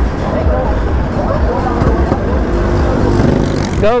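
Go-kart engines running close by, a steady low rumble under a babble of voices.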